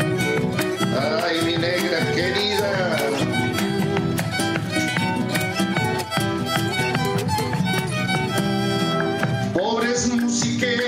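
Argentine folk music: an instrumental passage of a song, a fiddle melody over a steady strummed rhythm.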